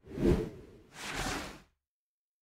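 Two whoosh sound effects of an animated logo intro, about a second apart: the first short with a heavy low end, the second a longer airy swish that cuts off abruptly.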